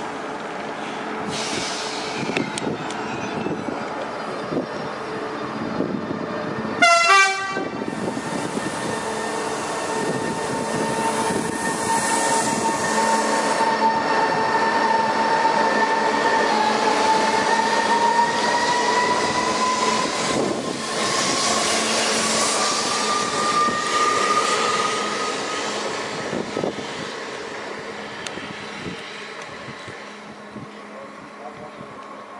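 Renfe Series 121 electric multiple unit pulling out: a short horn blast about seven seconds in, then the whine of its electric traction drive rising in pitch as it accelerates away over the rails, fading near the end.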